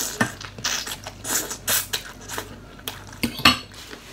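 Metal fork and spoon clinking and scraping against a glass bowl, with noodles being slurped in between. A sharp clink about three and a half seconds in is the loudest.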